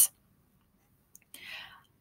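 Near silence, then a faint click and a short breath taken by the speaker about a second and a half in, just before she talks again.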